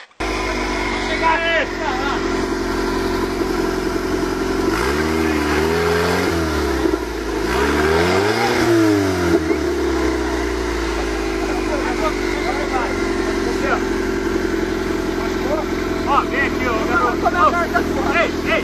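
Off-road buggy engine running steadily, revved up and back down twice, about five and eight seconds in, with voices shouting over it.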